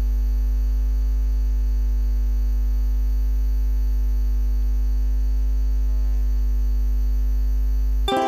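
Loud, steady electrical mains hum through the amplified signal chain as an instrument cable's jack plug is held at an electric ukulele's output socket: a deep hum with a buzzy stack of higher tones above it, typical of an ungrounded jack.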